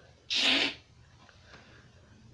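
A man sneezes once, a short sharp burst about a third of a second in.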